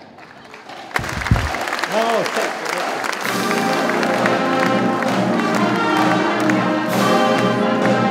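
Audience applause breaks out, with a low thump and a short shout in the first two seconds. Orchestral music with brass starts about three seconds in and carries on over the clapping.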